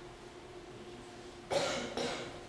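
A person coughing: a sharp cough about a second and a half in, with a second one at the end. A faint steady hum runs underneath.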